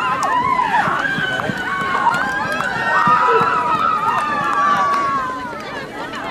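A group of girls' voices talking and calling out over one another at once, high-pitched and continuous, with no single voice standing out.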